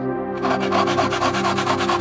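Hacksaw cutting into a small wooden block held in a vise: quick rasping strokes that begin about half a second in. A steady ambient music drone plays underneath.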